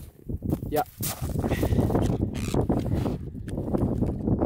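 Wind buffeting the microphone: a heavy, irregular low rumble that comes up about a second in and drowns out the rest of the audio.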